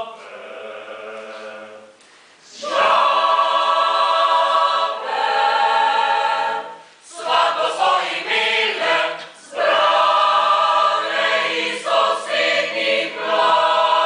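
Mixed choir of men's and women's voices singing a cappella: a soft passage at first, then full voices coming in under three seconds in, in phrases with short breaks between them.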